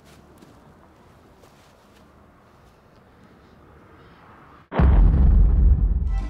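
Faint outdoor background noise with a few light clicks, then, about four and a half seconds in, a sudden loud, deep blast of noise that runs on to the end.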